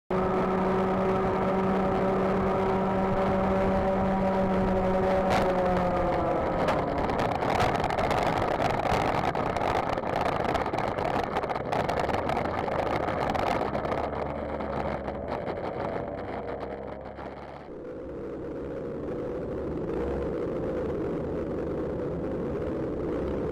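Racing kart engine heard from an onboard camera, holding a steady high-revving note for about five seconds, then falling in pitch as the throttle comes off. There follows a stretch of rattling and knocks with the kart off the track on the grass, and near the end a lower engine note.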